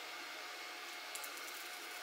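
Steady low hiss of background room noise with a faint hum, and a few faint crackles a little over a second in as blue tape is handled on the battery pack.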